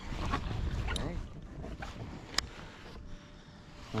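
Wind rumbling on the microphone and water sloshing at the side of a small boat while a hooked fish is handled there, with a few sharp clicks and knocks. It grows quieter after about two seconds.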